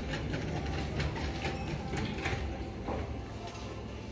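Metal shopping trolley being pushed over a tiled floor: its wheels rumble and its wire basket rattles continuously.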